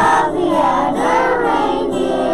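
A group of young children singing a Christmas song together, with instrumental accompaniment.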